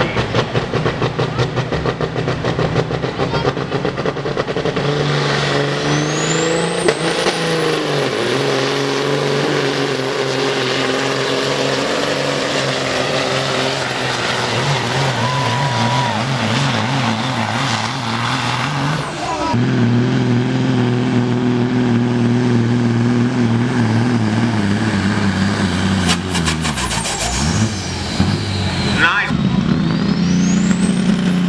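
Diesel semi-truck engines running at full throttle in a truck pull, hauling a weight sled, with a high turbo whistle that climbs over a couple of seconds and then holds. About two-thirds of the way through the sound switches abruptly to another semi running hard. Its note dips near the end and then climbs again.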